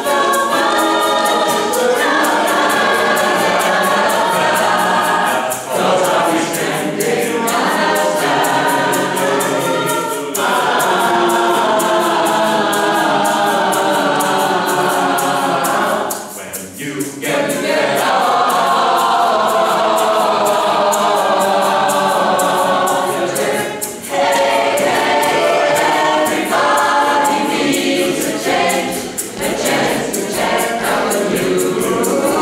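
A mixed choir of men's and women's voices singing in parts, in phrases with brief breaks between them, the longest about two-thirds of the way through.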